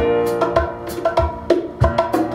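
Acoustic band playing an instrumental passage: sustained piano tones with sharp percussion strikes, no vocals.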